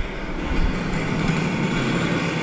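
A steady low mechanical rumble, heaviest at the bass end in the first half second.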